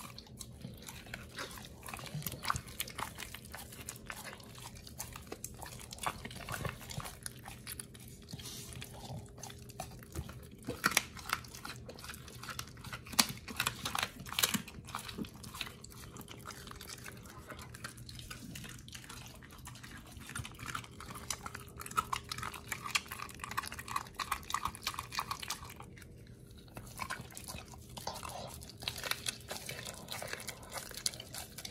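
A pit bull biting and chewing a hand-held piece of raw meat: irregular wet chewing with sharp crunches and clicks of teeth, loudest around the middle, with a short pause shortly before the end.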